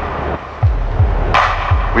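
Electronic music beat: several deep kick drum hits, with one sharp drum hit about one and a half seconds in.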